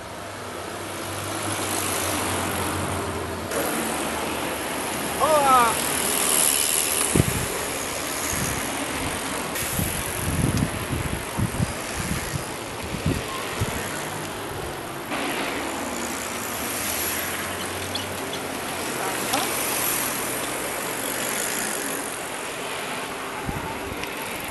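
A group of cyclists riding past on a paved path, with the riders talking and calling out over the noise of the bicycles. There are some low thumps in the middle.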